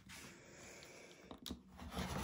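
Quiet handling of a rotary cutter and acrylic ruler on a cutting mat, with a light click about a second and a half in. Near the end the rotary blade starts rolling through the bag's layers, its noise growing louder.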